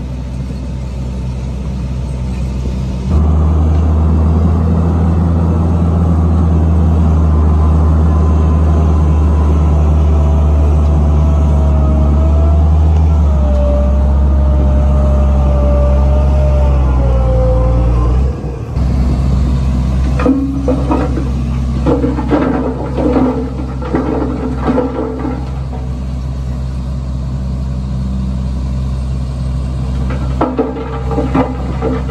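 Heavy diesel dump-truck engine running loud and steady, with a whine above it that wavers up and down in pitch. The sound starts suddenly about three seconds in and cuts off about eighteen seconds in. Rougher uneven knocking and clatter follow.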